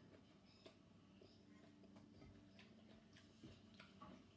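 Near silence over a faint low hum, broken by a few faint, scattered clicks of eating by hand: chewing, and fingers picking salad off a plate.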